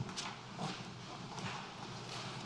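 Footsteps of a person walking up to a lectern: a few soft, irregularly spaced steps.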